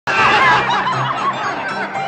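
A man's loud laughter and crowd voices over music with held low notes, cutting in abruptly at the very start and loudest in the first half second.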